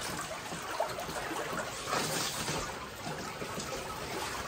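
Floodwater trickling steadily.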